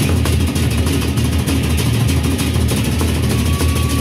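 Gendang beleq ensemble: several large Sasak barrel drums beaten together in a fast, dense roll, with hand cymbals clashing rapidly over them.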